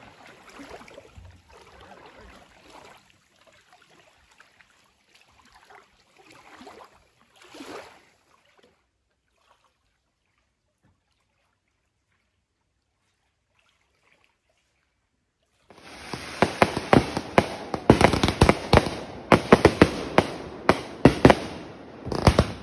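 Faint lapping water, then a long quiet gap, then fireworks going off in a rapid string of loud bangs and crackles.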